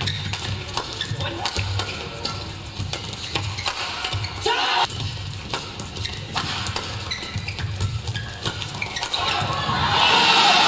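Background music with a steady low beat, over sharp clicks of badminton rackets striking the shuttlecock during a fast men's doubles rally.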